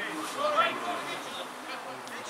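Indistinct voices of people at the pitchside calling and chatting, loudest in the first second and then quieter.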